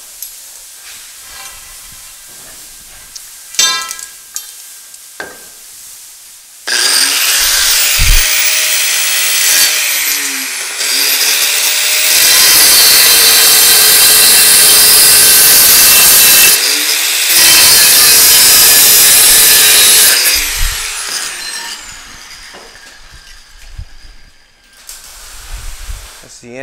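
Handheld angle grinder with a cut-off wheel cutting through steel bar stock. After a light metal clink, the grinder spins up about seven seconds in, cuts loudly for some thirteen seconds with a brief pause partway, and winds down.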